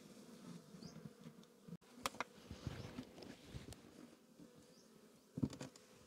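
Honeybees buzzing faintly around an open hive, a low steady hum. A few light knocks from the wooden hive covers being set in place come about two seconds in and shortly before the end.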